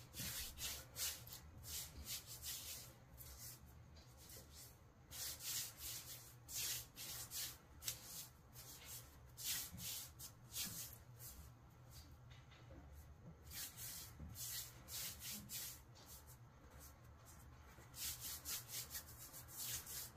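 Floured hands rubbing together to scrape sticky bread dough off the palms and fingers: faint, irregular dry rubbing strokes.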